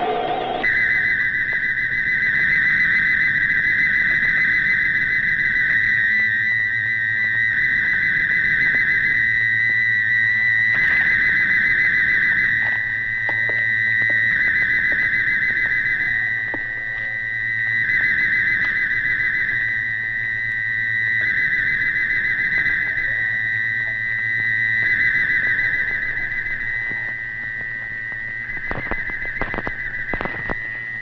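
Electronic sci-fi soundtrack: a loud, high, steady electronic tone whose texture switches back and forth every second and a half to two seconds, with a low hum that comes and goes in step with it.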